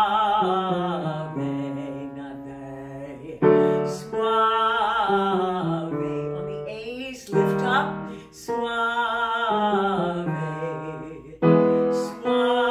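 A woman singing a loud chest-voice vocal exercise on the word "suave" with vibrato, over sustained upright piano chords. There are three main sung phrases, each starting with a fresh chord, and a short rising vocal slide between the second and third.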